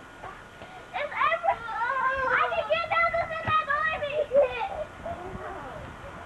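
Young children's voices shouting and calling out without clear words as they play, high-pitched and overlapping, from about a second in until nearly five seconds.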